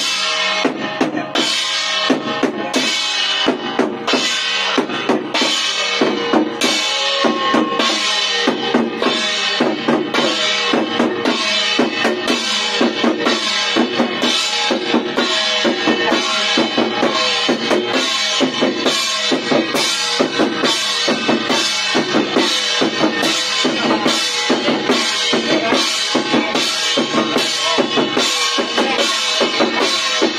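Small red Chinese ritual drums beaten in a fast, steady rhythm, about two strikes a second, with a sustained ringing tone carrying under the beat.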